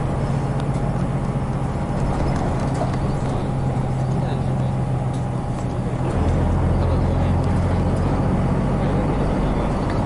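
Onboard running sound of a 1996 Hino Blue Ribbon KC-RU1JJCA route bus, its diesel engine droning steadily under way. About six seconds in, the engine note drops lower and gets louder.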